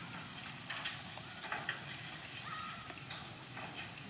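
Light, scattered knocks of long-tailed macaques' feet and hands on a corrugated metal roof, over a steady high hiss. A short high call sounds about two and a half seconds in.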